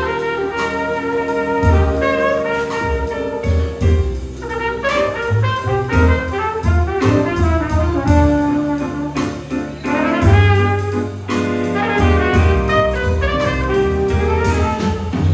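Live jazz band playing an instrumental break: a brass horn solo, tagged as trumpet, running in quick melodic phrases over keyboard, bass and drums.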